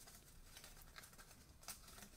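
Near silence, with a few faint light ticks and rustles of stiff paper being handled as a paper brim is fitted onto a hat crown; one tick a little before the end is slightly clearer.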